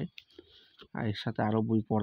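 A man speaking. About the first second is a pause holding only a few faint clicks, and then his talk resumes.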